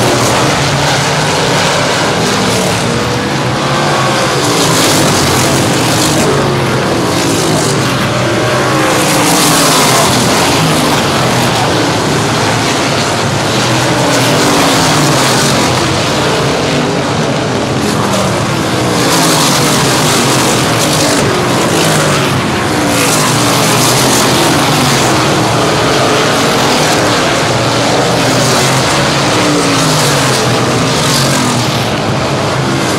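Several winged sprint cars' V8 engines at racing speed on a paved oval, loud and continuous, their pitch rising and falling again and again as the cars pass and work through the turns.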